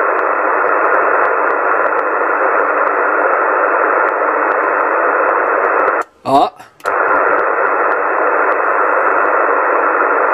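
Steady hiss of static from a Yaesu FT-450 transceiver receiving on CB channel 27, cut off sharply above and below like a narrow radio passband, with no voice coming through. About six seconds in, the hiss breaks off for under a second as the set is keyed to transmit, with a brief scrap of sound, then it comes back.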